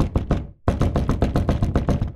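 Knocking on a door: a short quick run of knocks, a brief pause, then a longer run of rapid knocks, several a second.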